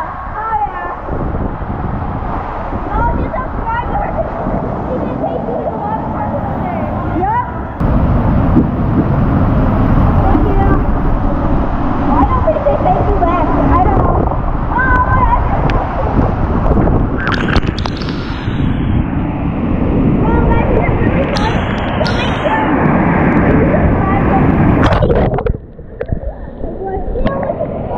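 Inner tube sliding down an enclosed waterslide: a steady rushing rumble of water and tube in the flume, with riders' voices over it. It gets louder about eight seconds in.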